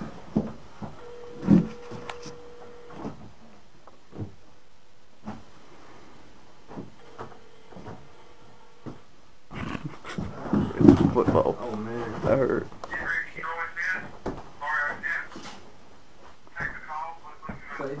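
Telephone ringback tone, the caller's side of a ringing line, heard over the phone's speaker: two steady two-second rings about six seconds apart. In the second half it gives way to a stretch of indistinct voices.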